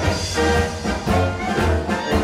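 A Czech dechovka brass band playing, with brass voices carrying the tune over a steady beat in the bass.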